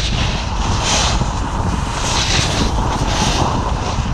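Wind rushing over an action camera's microphone as a snowboard runs fast down a groomed slope, a steady low rumble. Over it, the board's edge hisses and scrapes across the snow in three carved turns about a second apart.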